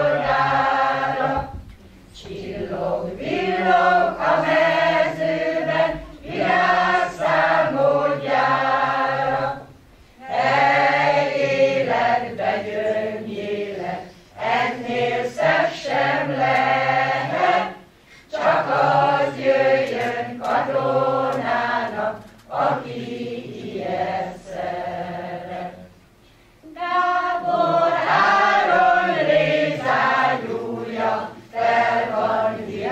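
Mixed choir, mostly women's voices with a few men's, singing a song unaccompanied, in phrases separated by short pauses.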